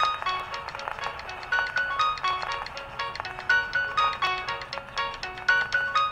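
A record playing on a small horn gramophone: a tinny melody of quick, chiming high notes, a few per second.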